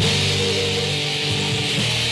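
Live band playing a loud rock-style worship song: electric guitar, bass guitar, drum kit and keyboard, with cymbals bright throughout. The band comes in louder right at the start.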